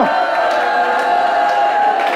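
A church congregation's many voices calling out together, held and overlapping in a steady, loud mass of sound.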